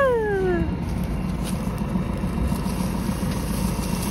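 A single short meow-like cry, like a cat's, right at the start: it rises sharply, then slides down in pitch over less than a second. Under it, a tractor engine keeps up a steady low hum.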